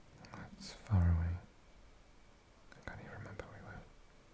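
A man's soft whispering voice: a short low hum about a second in, then a few breathy whispered words near the end.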